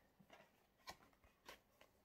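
Near silence, with a few faint soft clicks from a paperback book being handled and closed.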